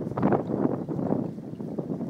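Wind buffeting the microphone in uneven gusts, a low rumbling rush.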